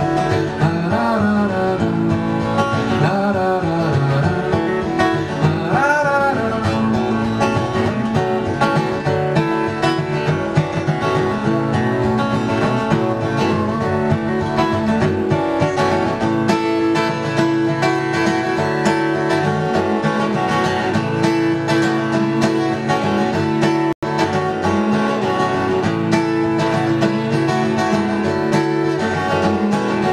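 Solo acoustic guitar played live in a long instrumental passage, with a few notes sliding in pitch in the first several seconds. The sound drops out for an instant about three-quarters of the way through.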